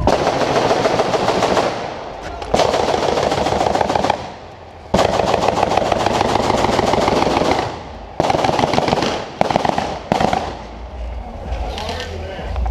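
Airsoft rifles firing on full auto: about six long bursts of rapid clicking shots close by, with short gaps between them.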